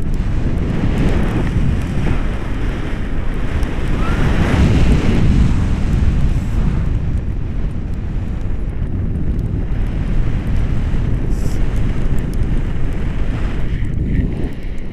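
Wind rushing and buffeting over an action camera's microphone in paraglider flight: a loud, continuous low rumble that swells for a couple of seconds about four seconds in.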